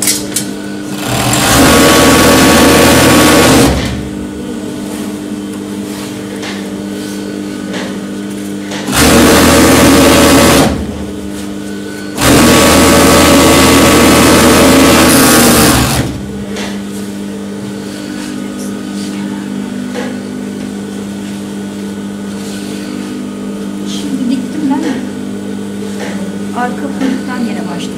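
Industrial four-thread overlock machine stitching along a fabric edge in three runs: one starting about a second in and lasting a couple of seconds, a short one around the middle, and a longer one of about four seconds. Between runs its motor keeps a steady hum.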